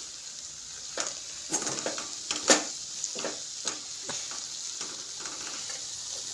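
A masala frying and sizzling in a metal kadai while a metal spatula stirs it, scraping and clinking against the pan several times, loudest about two and a half seconds in.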